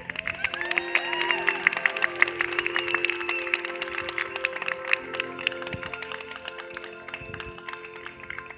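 Audience clapping and cheering once the song has ended, over the last held notes of the backing music. The clapping is dense early on and thins out towards the end.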